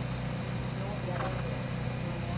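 A steady low mechanical hum with faint voices in the background.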